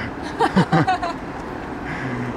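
Steady city street traffic noise, with a brief chuckle about half a second in.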